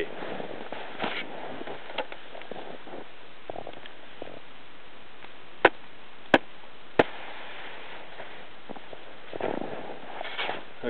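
Three sharp taps about two-thirds of a second apart, struck on a shovel blade laid on top of an isolated snow column during an extended column test, after a few faint handling noises. The column fractures cleanly on the third tap, across a thin crust with facets on top about 16 inches down: a sign of an unstable weak layer.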